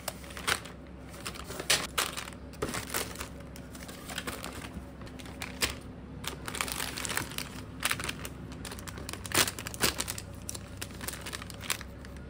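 Packaging being crinkled and handled: irregular crackles and rustles, several of them sharp and loud.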